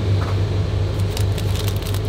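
Steady low hum of room ventilation, with a few faint clinks in the second half.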